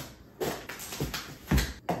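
Packing tape being torn from a cardboard shipping box, with a few short rips and scrapes. The loudest comes about one and a half seconds in.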